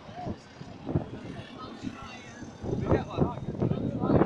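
Indistinct voices of people talking over the noise of passing road traffic, growing louder near the end.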